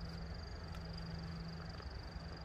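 Faint, steady high-pitched trilling of crickets, with a low steady hum underneath that fades near the end.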